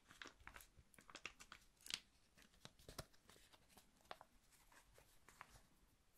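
Faint, close crinkling and crackling of hands handling crinkly material while getting a candle wick ready: an irregular run of small, sharp crackles, a few louder ones about two and three seconds in.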